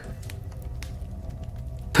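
Quiet, steady, dark ambient background music with a low sustained drone.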